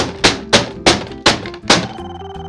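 A corded telephone handset banged hard on a desk about six times in quick succession, each a sharp plastic knock, over background music.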